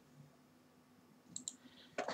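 A faint computer mouse click, two quick ticks about one and a half seconds in, over near silence.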